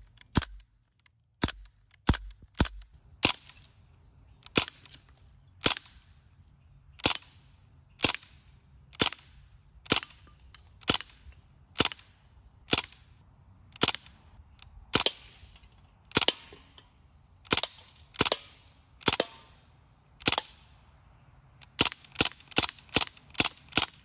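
CO2-powered Crosman DPMS SBR BB rifle firing in semi-automatic mode: about twenty sharp single shots roughly a second apart, then a quicker string of shots near the end.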